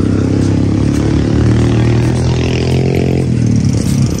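Boat engine running steadily, then slowing with its pitch dropping a little past three seconds in.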